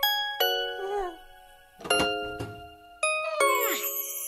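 Bell-like chime notes struck one at a time, about six of them, each ringing and fading before the next. Some carry a short wavering bend in pitch, and a falling glide comes near the end: a twinkly musical lead-in.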